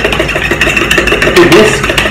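Fork whisking eggs in a plastic mixing bowl: a fast, steady run of beating and clattering strokes.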